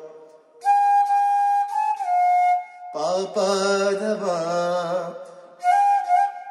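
Bamboo transverse flute playing a held note that drops a step lower, then a man singing the phrase in sargam note names. Near the end the flute comes in again on a held note.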